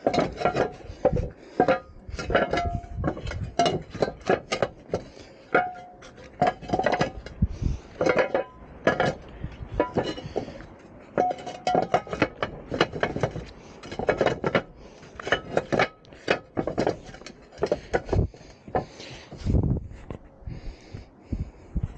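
Terracotta canal roof tiles knocking and clinking against one another as they are handled and set back in place: a long irregular run of sharp ceramic clinks, some with a brief ring.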